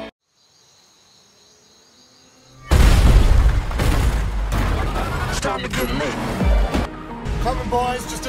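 After a quiet stretch of about two and a half seconds, a sudden loud crash as an SUV smashes through a wall, with flying debris. It runs on into dense action-trailer effects and score.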